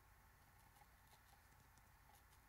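Near silence: room tone, with a few faint soft ticks.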